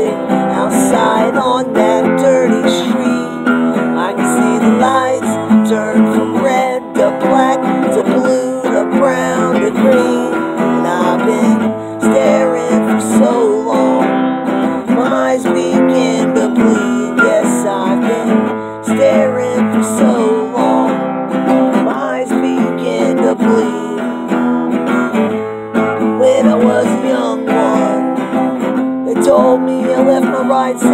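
Acoustic guitar strummed steadily in a folk-punk rhythm.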